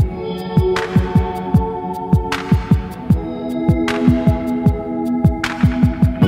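Background electronic music: sustained synth chords over a deep kick drum whose pitch drops on each hit, with quick high ticks and a rushing swell about every second and a half.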